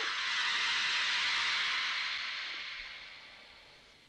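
Horror-film shock sting: a high hissing wash, like a struck cymbal, hits at the start and fades away over about three seconds.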